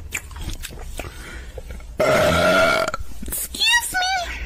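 A woman's loud, long burp about two seconds in, lasting about a second. It is followed near the end by a short run of quick, high, wavering squawks.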